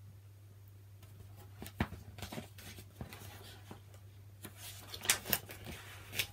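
A large picture book's paper pages being handled and turned: a scatter of soft rustles and light clicks, busier in the second half. A faint steady low hum runs underneath.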